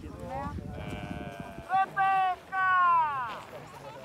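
A person calling out the name "Rebecca" in a high, loud shout in three syllables, the last held long and falling in pitch at the end.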